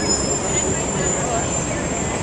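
Steady city street traffic noise, with a bus running close by and voices in the background.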